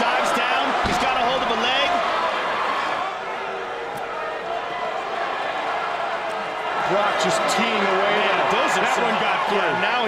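Arena crowd cheering and shouting at a heavyweight MMA fight, with a heavy thud about a second in as the takedown lands on the mat. The shouting grows louder from about seven seconds in.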